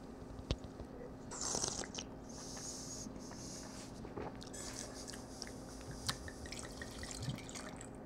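Quiet sounds of red wine being sipped and drawn through the mouth, with a soft hiss lasting a second or two, then a few light clicks as the glass and bottle are handled.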